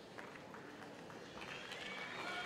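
Faint, sparse taps, about three or four a second, in a large hall with a low background hum.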